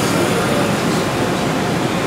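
Cooling fans of a CNC machining centre's spindle chiller units running: steady, even fan noise with no distinct tone.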